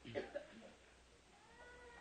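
Near-silent room tone between phrases of speech, with a faint, thin pitched sound held for about half a second near the end.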